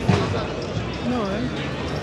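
Speech: a voice talking briefly, with a short dull thud right at the start, over the chatter and noise of a busy pedestrian square.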